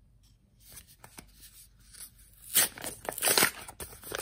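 Paper mailing envelope being torn open: faint paper handling at first, then from about two and a half seconds in, a run of loud ripping.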